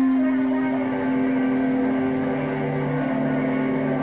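Distorted electric guitar holding a steady, droning chord in a lo-fi cassette demo of a 1980s punk band, with a lower note joining about halfway through.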